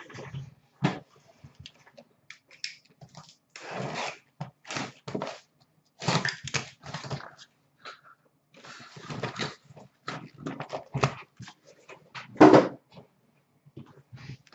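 Cardboard hockey card hobby boxes being taken out and stacked on a counter: irregular rustling, scraping and light knocks, the loudest about twelve seconds in.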